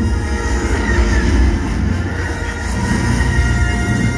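Dark, dramatic music from a nighttime castle show's soundtrack, played over outdoor park loudspeakers, with a heavy low rumble underneath.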